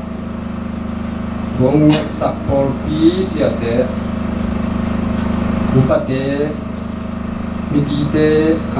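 A man speaking a few short phrases into a handheld microphone, with pauses between them. Under the voice is a steady low hum that stays level through the pauses.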